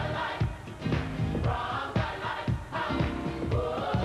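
Gospel choir singing over a steady beat of about two hits a second.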